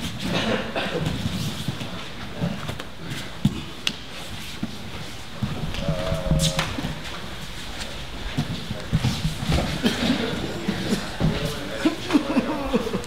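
Grapplers sparring on foam mats: bodies and bare feet scuffling and thudding on the mat, with sharp slaps and knocks scattered throughout and the wrestlers' breathing and grunts. A brief high squeak comes about halfway through.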